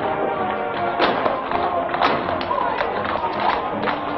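Film score music playing, with sharp accented hits running through it.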